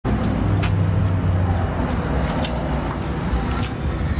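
Steady low rumble of outdoor traffic noise, heaviest in the first second and a half, with a few sharp clicks.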